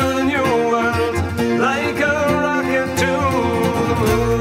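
An Irish folk band playing a song: plucked acoustic guitar with bass under a melody line that slides between notes.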